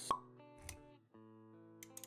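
Intro jingle music with a short pop sound effect just after the start. The music dips briefly about a second in, then resumes with held notes.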